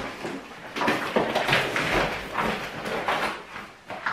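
Groceries being handled and put away: plastic packaging and bags rustling, with light knocks and clatter at the cupboard.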